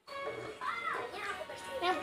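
A child's voice, a short rising-and-falling hum and then a word near the end, over faint music from a mobile game playing on a phone.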